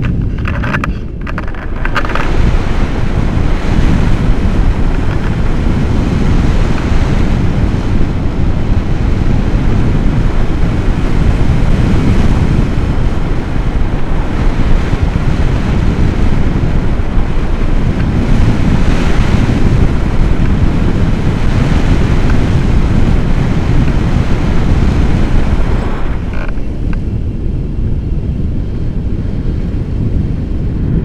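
Wind rushing over a selfie-stick action camera's microphone during a tandem paraglider flight: a loud, steady buffeting noise, heaviest in the low end, that builds up about two seconds in and thins a little in the upper range near the end.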